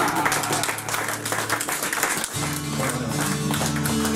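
Audience clapping as a live folk-punk band's final chord dies away. A little over two seconds in, steady guitar notes start up again under the clapping.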